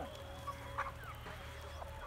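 Scattered short clucks from a flock of chickens, with a faint steady hum underneath.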